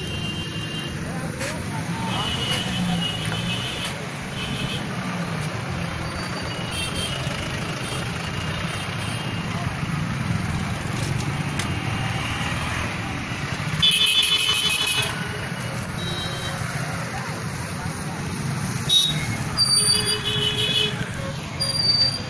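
Slow, congested road traffic: engines running with a steady hum of street noise and voices, and vehicle horns honking in short blasts, the loudest a pulsing horn about 14 seconds in and more horns near the end.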